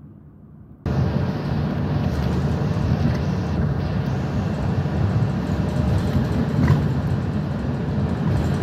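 Steady engine and road noise heard inside a moving shuttle bus, cutting in suddenly about a second in after a moment of quieter, muffled street ambience.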